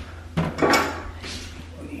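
A few short metallic clinks and knocks as a spanner is handled against the 3D printer's metal parts, mostly about half a second in.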